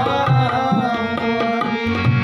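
Ghazal sung by a man to his own harmonium, with tabla keeping time: steady harmonium drones, a wavering sung line, and sharp tabla strokes over deep bass-drum notes.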